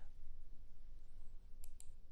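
Two quick, faint clicks near the end over a low steady hum of room tone.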